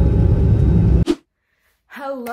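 Airliner cabin noise, a loud steady low rumble, that cuts off abruptly with a short click about a second in, followed by silence.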